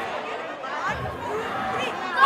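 Several young voices chattering and talking over one another: a group of schoolgirls.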